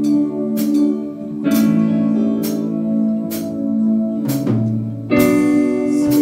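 Live worship band playing an instrumental passage: sustained guitar and keyboard chords over a steady beat of about one hit a second, with a chord change about five seconds in.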